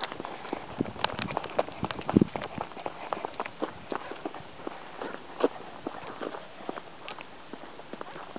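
Irregular footsteps of people walking and moving quickly on the ground, with uneven knocks. A heavier thump comes about two seconds in.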